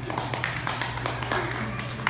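Scattered clapping from a small audience at the end of a bluegrass song, with voices talking over it.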